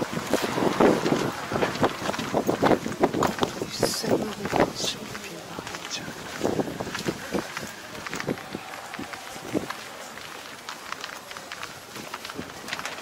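Indistinct voices of people talking, mixed with wind on the microphone and a run of short knocks and rustles that are busiest in the first half.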